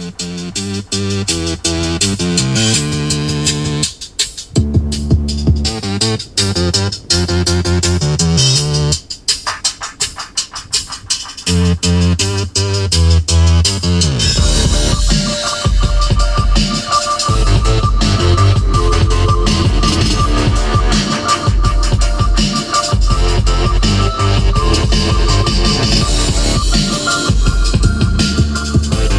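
Electronic music played loud over the Hyundai Santa Fe's 630-watt, twelve-speaker Infinity audio system. It opens with sparse, stop-start notes, and a heavy bass beat comes in about halfway through.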